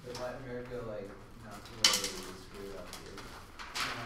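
Low, quiet male speech muttered in a classroom, with a sharp knock about two seconds in, like something set down hard on a desk.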